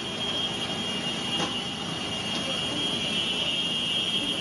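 Tsunami floodwater rushing through a street with debris, a continuous noise, under a steady high-pitched alarm tone; a single sharp knock about a second and a half in.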